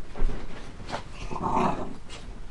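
Small dogs play-fighting on a bed: scuffling and bumping, with a sharp bump just after the start and a short growl around a second and a half in.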